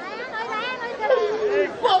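Speech only: a high-pitched voice talking animatedly, getting louder and ending in a loud, drawn-out call near the end.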